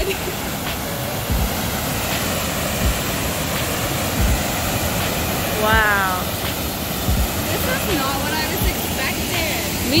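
Waterfall pouring over rocks into a pool below, a steady rush of white water. A short spoken exclamation cuts through about six seconds in.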